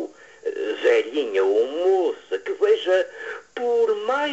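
A man's voice reciting a poem in Portuguese, declaimed with drawn-out syllables whose pitch swoops up and down.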